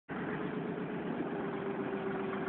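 A motor vehicle engine idling steadily, with a constant low hum.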